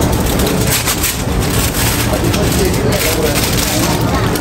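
Busy café ambience: background voices and the clatter and rustle of counter work, with a run of quick crackling rustles through the middle.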